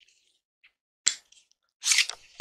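Handling noises from objects being picked up off a table: a sharp click about halfway through, a couple of faint ticks, then a brief loud rustle near the end.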